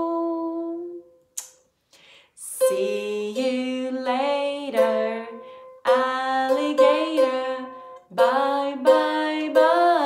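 A woman singing a slow goodbye song in long held notes, with light ukulele strumming. A pause of about a second and a half comes near the start before the singing resumes.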